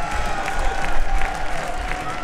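Spectators applauding, with scattered claps over a crowd haze. Two steady high tones are held underneath the applause.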